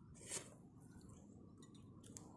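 Near silence: a faint steady background, with one brief soft noise about a third of a second in.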